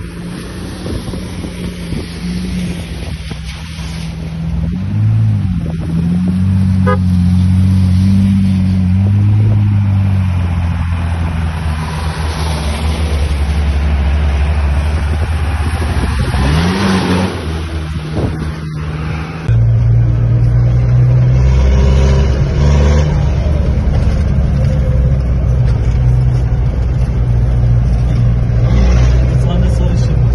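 Engines of off-road 4x4s working up a dirt trail, revving up and easing off as they climb. About two-thirds in, the sound cuts abruptly to a steadier, lower engine drone.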